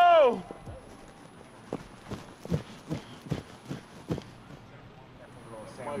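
A man's loud shout ends in the first half-second. Then comes quiet outdoor background with about half a dozen scattered sharp knocks and taps, and a man's voice begins again near the end.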